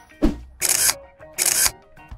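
Camera shutter sound effect for a selfie: a short click, then two loud shutter snaps about three-quarters of a second apart.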